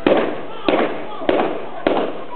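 Four gunshots from blank-loaded guns, fired about two-thirds of a second apart, each with a short echo.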